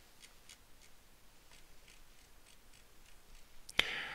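Faint, quick ticking of a computer mouse's scroll wheel as a page of text is scrolled, a few uneven ticks a second. Near the end comes one louder, sharp click.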